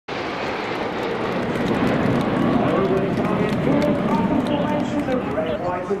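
Steady jet noise from the Red Arrows' BAE Hawk trainers during their display, with voices talking underneath from about halfway through.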